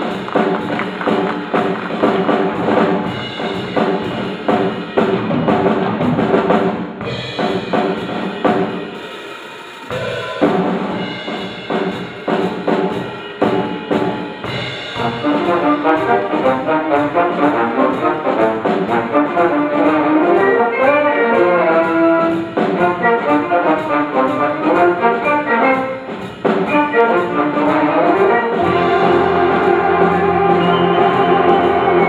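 A big band playing live: saxophones, trombones and trumpets over piano, bass guitar and drum kit. The sound briefly drops about ten seconds in, a single melodic line stands out over the second half, and the full band with its low end comes back in near the end.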